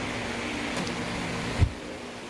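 Steady background hum and hiss, with one short low bump from the phone being handled about three-quarters of the way through.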